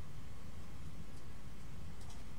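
Quiet room tone with a steady low hum, and faint rustling of fabric being handled about a second in.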